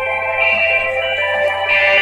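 Live band music: held electric guitar chords that shift a few times, with no drumbeat yet.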